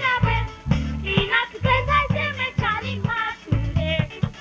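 A boy singing a calypso into a microphone over a band's accompaniment, with bass and a steady beat.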